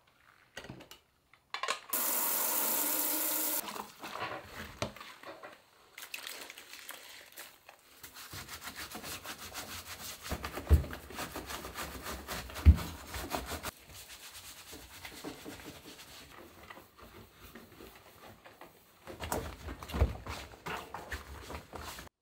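Rubber-gloved hands and a cloth scrubbing and wiping the rubber door gasket of a front-loading washer, a dense run of quick rubbing strokes with two sharp thumps in the middle. A short steady hiss comes about two seconds in, and the rubbing starts again near the end.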